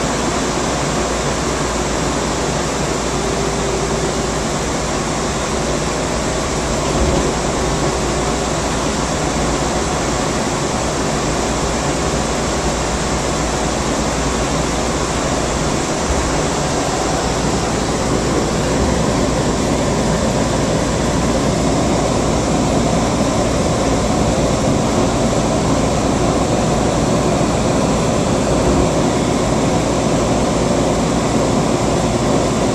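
Steady running noise inside a moving AirTrain monorail car, an even rush and hum that grows slightly louder in the second half.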